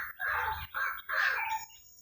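A few short bird calls, faint and separated by brief pauses.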